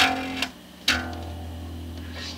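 Rickenbacker 4001 electric bass: two notes of a slow arpeggio plucked, one at the start and one about a second in, the second left ringing and fading. It is the 'sad' arpeggio of a bass whose neck has a hump on the bass side.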